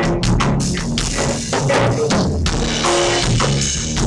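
A small band playing live in a bossa nova style: a drum kit with kick, snare and cymbals keeping a steady rhythm under electric guitar chords and bass guitar.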